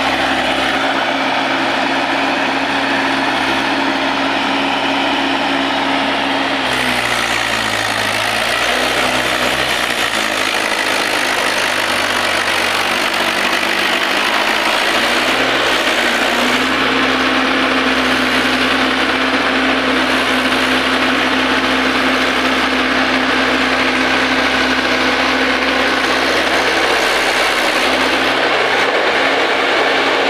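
Mahindra 475 DI tractor's four-cylinder diesel engine running steadily under load as it hauls a soil-laden trolley; about seven seconds in its note changes and wavers for several seconds, then settles back to a steady beat.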